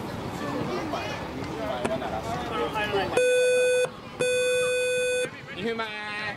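Electronic buzzer sounding two steady beeps about three seconds in, the first under a second long and the second about a second long. Men's voices talking on the field before and after.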